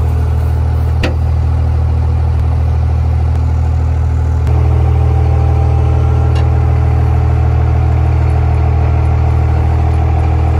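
An engine running steadily at a low, even speed, stepping up to a higher, louder speed about four and a half seconds in. A sharp metallic click comes about a second in.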